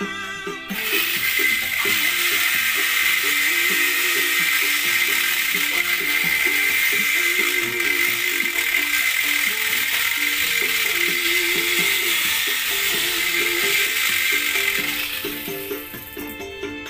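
A high-speed die grinder running steadily with a hiss and a high whine, which fades out near the end, over background music.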